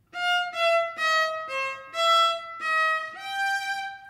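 Viola bowed at a slow practice tempo: a short phrase of about seven separate, detached notes, each about half a second, ending on a longer, higher held note.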